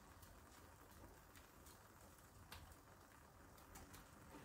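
Near silence, with a few faint light ticks of a wooden spatula poking at prawns and egg in a frying pan.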